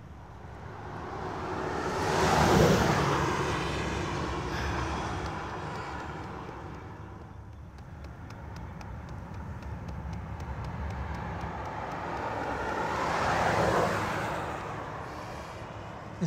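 Two cars pass one after the other on the street, each swelling up and fading away: the first and loudest a couple of seconds in, the second near the end.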